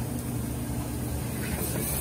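Steady low drone and hiss of a commercial kitchen, with the range's gas burners lit.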